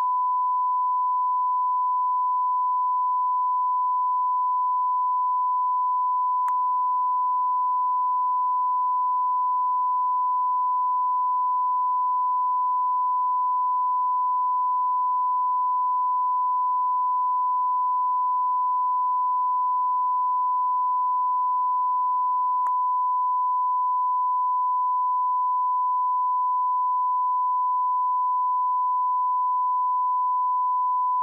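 Broadcast line-up test tone: a single steady pitch held unbroken at an even level, with two faint clicks, one about six seconds in and one about twenty-three seconds in.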